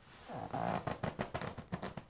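Leather cowboy boots shifting as the legs move: a quick run of sharp clicks and scrapes, several a second, in the second half.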